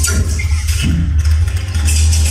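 Electroacoustic music for amplified cello and digital audio: a loud, steady low electronic rumble with crackling, hissing noise above it.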